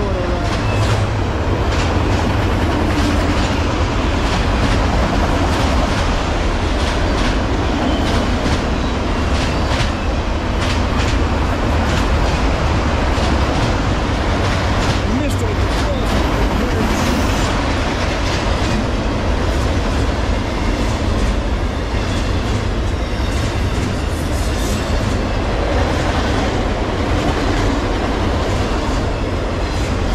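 Enclosed autorack freight cars rolling past close by at speed: a steady, loud rumble of steel wheels on rail, with a running stream of clicks and clanks from the wheels and the car bodies.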